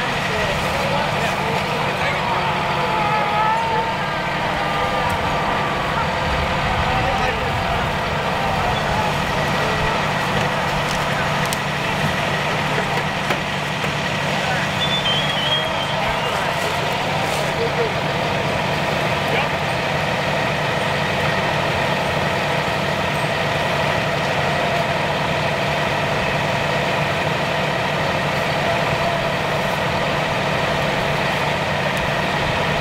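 Engines idling steadily at a crash rescue scene, a constant drone with low hum and fixed tones, with faint voices of rescuers over it.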